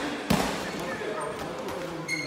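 A boxing-glove punch landing on a focus mitt once, shortly after the start: a sharp slap that echoes in a large hall and fades.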